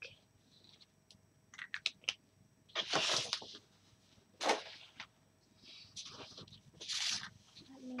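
Paper and craft pieces handled on a paper-covered table: a few short rustling swishes, the loudest about three seconds in and near the end, with faint ticks just before.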